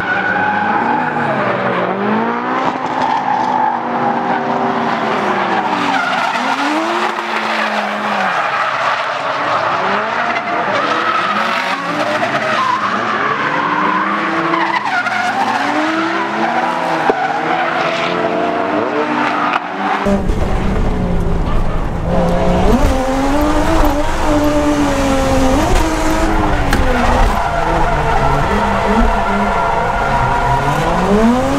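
Drift cars sliding with tyres squealing, their engines revving up and down repeatedly as they are held at high revs through the corners. Several engines are heard at once at first. About two-thirds through, the sound becomes a single deeper, fuller engine heard from inside the cabin of the Toyota Chaser JZX100, whose straight-six keeps revving and falling as it drifts.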